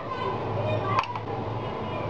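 A steady low room hum with a single light clink about a second in: a spoon touching the glass of ice cubes as orange crush is spooned in.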